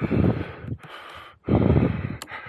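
Wind buffeting the camera microphone in two gusts, one at the start and one near the end, with a lower rushing hiss between them.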